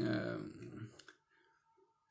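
A man's voice speaking Russian, trailing off about a second in, followed by a short pause of near silence.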